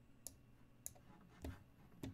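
Three faint clicks about half a second apart, the last one duller: a computer mouse clicking as a move is played in an online chess game.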